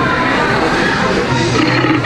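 Halloween animatronic bear prop playing its sound track while it moves: music with growling, roaring voice effects.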